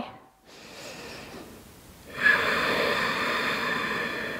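A woman breathing audibly while holding a yoga pose: a faint inhale, then a long, steady exhale starting about two seconds in.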